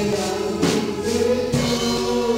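Live church music: singing into a microphone over an amplified band of guitar, keyboard and drum kit, with held notes and a steady beat.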